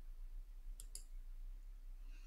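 Two faint, sharp clicks about a quarter second apart, a little under a second in, as the presentation slide is advanced, over a low steady electrical hum.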